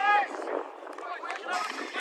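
Footballers' voices on the pitch: one loud shout right at the start, then fainter calls from other players.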